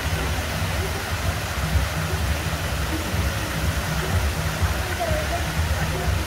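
Fountain jets and water spilling over the basin rim, splashing in a steady rush, with faint voices of people in the background.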